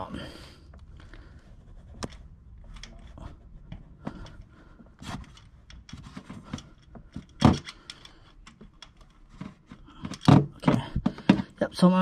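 Irregular clicks, clinks and scrapes of a socket wrench on an extension and swivel being worked against metal deep in an engine bay, loosening a tight E8 Torx bolt on the oil drip pan. A sharper knock comes about seven seconds in, and a flurry of clicks near the end.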